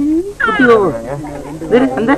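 People's voices in unclear speech, with one high-pitched vocal sound that slides down in pitch about half a second in.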